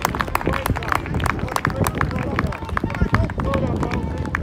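Spectators on the touchline shouting and clapping as a goal is scored, with many sharp claps and a low rumble on the microphone.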